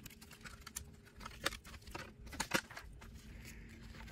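Faint scattered clicks and handling noises, with a few sharper ticks about halfway through, as an AeroLEDs Pulsar NSP wingtip light is pushed onto its metal mounting bracket on a carbon-fiber wingtip.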